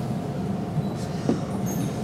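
Steady low rumbling background noise with a faint steady hum running through it.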